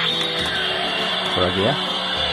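A cheap copy of the DX Ultraman Taiga Spark toy playing electronic music through its small built-in speaker.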